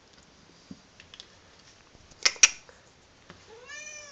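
Snow Bengal kitten giving one short meow near the end, its pitch rising then falling. A little before, two sharp knocks in quick succession are the loudest sounds.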